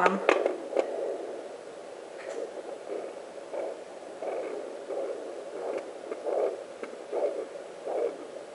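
Hand-held fetal doppler's speaker playing rhythmic whooshing heartbeat pulses picked up by the probe on a pregnant belly, over a steady hiss.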